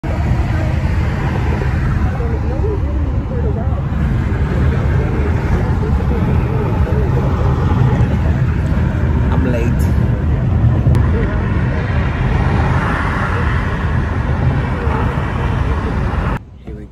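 Steady road and engine noise inside the cabin of a car moving at freeway speed, a loud low rumble that holds level throughout.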